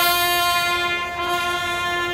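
Three trumpets playing together, holding one long, steady note.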